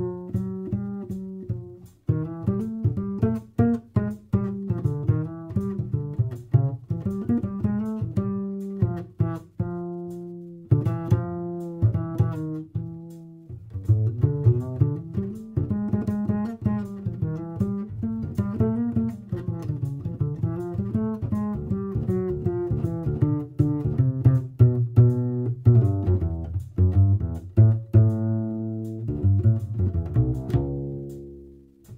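Kolstein Busetto travel double bass played pizzicato in a solo jazz line of plucked notes, heard as its acoustic signal on one side and amplified through a Vintage Revolution Acoustic Box II preamp on the other. Near the end it settles on a long, ringing low note.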